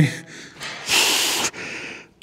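A man's forceful breath out, unvoiced, from the strain of a hard hamstring pull, about a second in, trailing into a softer breath.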